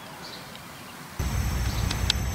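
Faint outdoor ambience, then a little over a second in the sound cuts abruptly to a louder outdoor scene: a low rumble under a steady, high-pitched insect drone.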